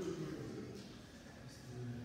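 Faint, indistinct voices talking in a room, with a quieter stretch in the middle.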